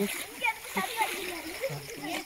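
Water splashing as people bathe in a river, with several voices calling and talking in short bursts over it.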